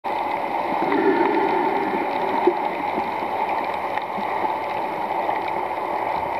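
Steady rushing water noise heard through a submerged camera, with faint scattered clicks over it.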